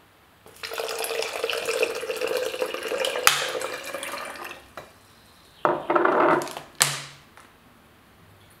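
Water poured from a plastic bottle into a tall glass: one long pour of about four seconds, then after a short pause a second, shorter pour. A sharp click sounds in each pour.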